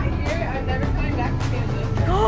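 Indistinct voices and background music over a steady low rumble.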